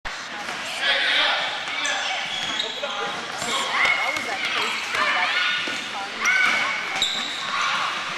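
Basketball bouncing on a hardwood gym floor, with a few sharp knocks, amid children's and adults' high-pitched calls and shouts that echo in the hall.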